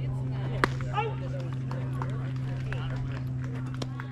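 A baseball bat cracks against a pitched ball about half a second in, then players and spectators shout. A second sharp snap comes near the end. A steady low hum runs underneath.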